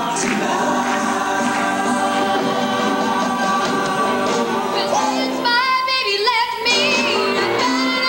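A vocal ensemble singing sustained chords in harmony through a PA, then about five seconds in a single solo female voice takes the lead with bending, ornamented lines.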